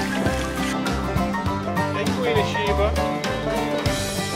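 Country-style background music with plucked strings over a steady bass, and a sliding melody line about halfway through.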